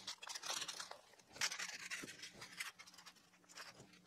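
Aluminium foil and paper wrapping crinkling and rustling as they are peeled off by hand, in faint, irregular bursts.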